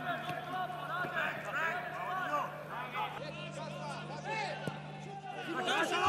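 Players and coaches shouting short calls on the pitch, many brief overlapping voices, over a steady low hum.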